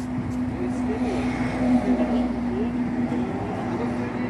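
A steady, even machine hum, with voices talking in the background.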